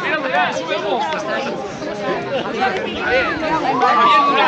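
Crowd chatter: several people talking at once, their voices overlapping.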